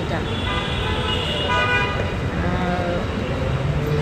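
Steady street traffic rumble with car horns tooting in held tones, under a person talking.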